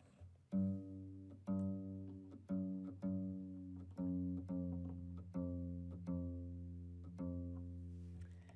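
Kora strings plucked one note at a time, roughly one or two notes a second, each ringing out and fading.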